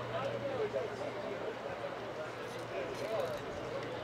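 Distant, indistinct voices of people calling out across an outdoor soccer field. A low steady hum stops about a second and a half in.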